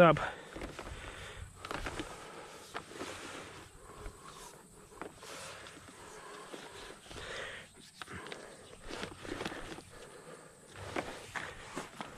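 Black plastic drip-irrigation tubing being coiled and handled on grass: scattered rustles, scrapes and light knocks of the tubing and its fittings, with footsteps.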